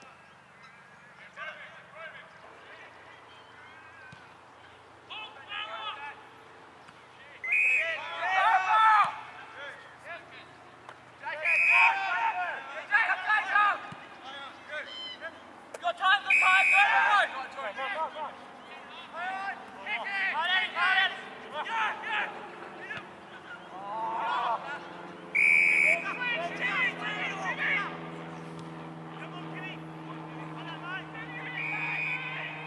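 Players shouting and calling out to each other across the field during an Australian rules football match. The calls are loud and short and come in bursts every few seconds. A low steady hum rises underneath toward the end.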